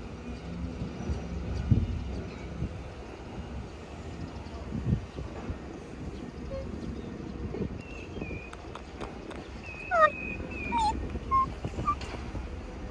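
Railway-platform ambience: a low steady rumble with a few dull knocks. From about eight seconds in come short chirping bird calls with quick falling whistles, the loudest about ten seconds in.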